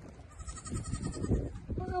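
A faint goat bleat with a wavering, pulsing quality, under a second long, a little after the start, over low scuffling and rustling.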